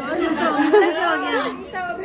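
Several women's voices talking over one another: overlapping chatter.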